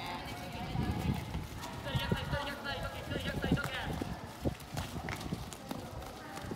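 Dull thuds of footballs being kicked and players running on a dirt pitch, several short knocks a second or so apart, with youths' voices calling out in the background.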